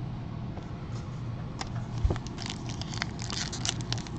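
Foil trading-card pack wrapper crinkling and tearing as it is pulled open by hand: a run of small, irregular crackles that grows busier after the first second, with one soft knock about two seconds in.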